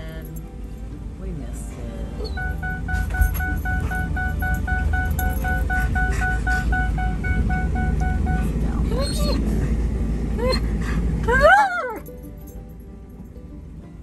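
Background music over a steady low rumble, with a rapid beeping of about four beeps a second for several seconds. Near the end comes a dog's howling yowls, rising and falling in pitch and loudest just before they stop.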